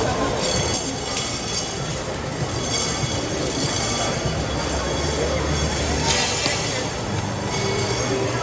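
Small amusement-park train cars running on a curved steel track, the wheels squealing in several stretches over a steady background din.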